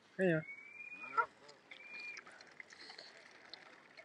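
Waterfowl calling: a thin high call of about half a second, a short honk about a second in, then another brief high call.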